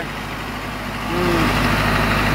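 Mahindra Arjun 555 DI tractor's four-cylinder diesel engine running steadily at low speed as the tractor creeps forward in first gear. The engine grows somewhat louder about a second in.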